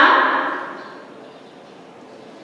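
A woman's voice trailing off and fading in the room's echo during the first second, then a low steady room hiss.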